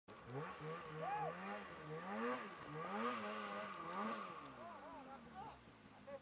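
Distant two-stroke snowmobile engine revving up and down again and again while the sled is stuck in deep snow, fading near the end.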